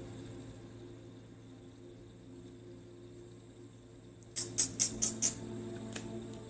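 Quiet ambient background music holding a steady drone, with a quick run of five sharp, high strikes close together about four and a half seconds in.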